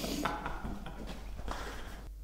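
A quiet pause in a garage: a short breath at the start, then low room noise with a few faint light knocks.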